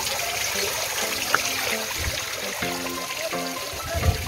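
Pool water trickling steadily from a rock water feature, with music playing in the background.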